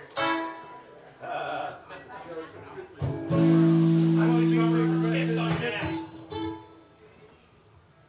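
A live band noodling on its instruments between songs: scattered plucked guitar notes with low voices, then a loud low note held steady for about two seconds in the middle, which dies away near the end.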